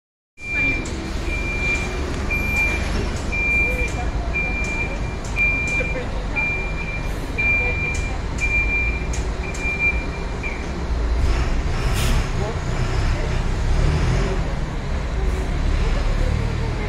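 A decorated articulated city bus moving slowly with its diesel engine rumbling low, while an electronic warning beeper sounds about once a second, roughly ten times, and then stops.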